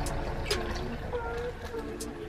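Water pouring through a funnel into a plastic spray bottle, a steady trickle that slowly grows quieter.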